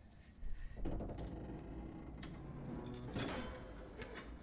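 Faint strained creaking and a few clanks of a heavy metal door being forced with a crowbar, coming from the episode's soundtrack.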